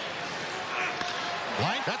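Ballpark crowd noise, with the crack of a bat meeting a pitched baseball about a second in, the contact for a base hit into the outfield.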